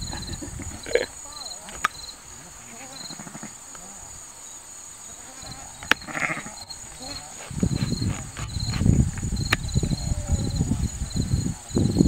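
Insects chirping outdoors in a quick, evenly pulsing rhythm over a steady high-pitched drone. After about seven and a half seconds, a louder, irregular low rumbling noise joins in and becomes the loudest sound.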